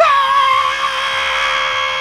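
A man's long, loud scream of disgust after sniffing a dirty diaper. It bursts in suddenly, holds one high pitch and stops after about two and a half seconds.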